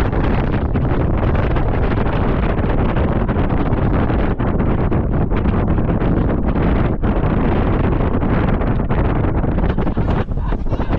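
Strong wind buffeting the microphone: a loud, steady rumble with rapid, uneven flutter from gusts.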